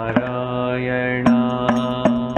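A man's voice singing a devotional chant in long held notes, with sharp percussion strikes keeping time.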